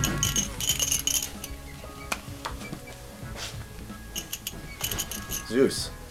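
Music fading out in the first second, then scattered light clinks and clicks of small hard objects, with a short voice sound near the end as the loudest moment.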